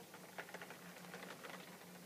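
Faint patter of heavy rain, a light hiss with scattered small irregular ticks.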